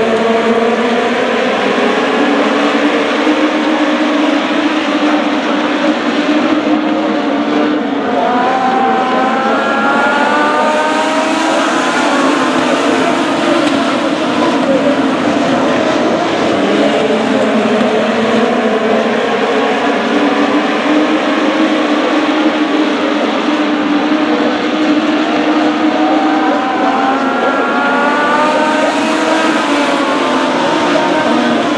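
A pack of Legends race cars running on a dirt oval, many motorcycle-derived engines at high revs together. The engine notes rise in pitch again and again as the cars accelerate out of the turns.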